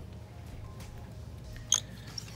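Low steady shop hum, with one sharp click about three-quarters of the way through as a small whiteboard on a wooden easel is handled and taken from the display.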